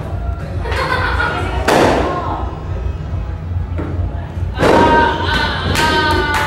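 Indistinct voices over background music with a steady low beat, broken by two sudden loud thuds, one about two seconds in and a louder one just before five seconds.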